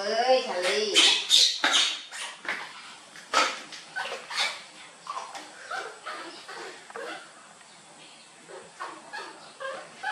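Baby monkey whimpering and squeaking in short calls, among sharp clicks and knocks of a formula tin and plastic baby bottles being handled.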